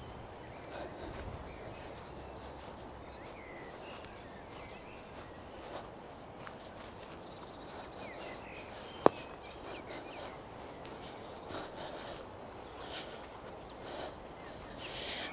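Quiet outdoor ambience with faint birdsong, blackbird and robin, and soft footsteps on a grass-and-gravel path, with one sharp click about nine seconds in.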